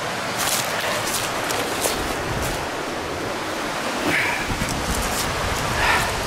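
Steady rush of the creek's waterfall, with footsteps crunching through dry leaf litter several times in the first half.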